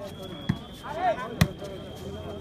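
Volleyball struck by hand twice during a rally: two sharp slaps about a second apart, the second louder, with spectators' voices around them.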